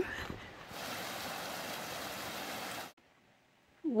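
Steady rush of running water, an even hiss that cuts off abruptly about three seconds in.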